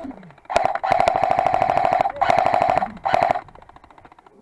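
Airsoft M249 support weapon firing three full-auto bursts, a long one of about a second and a half and two shorter ones. Each burst is a rapid, even rattle over a steady whine.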